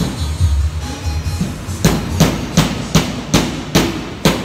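Background music, then about halfway through a run of sharp hammer blows, roughly two to three a second, as a fitting on a metal-conduit practice board is fastened to the plywood.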